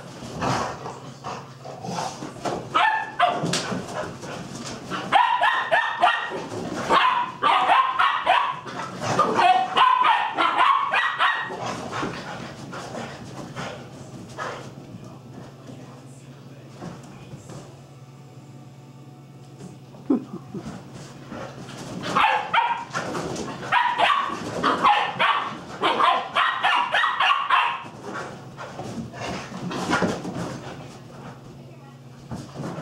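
Dogs barking in play, rapid barks in two long runs: one starting about five seconds in and another about twenty-two seconds in, with a quieter stretch between.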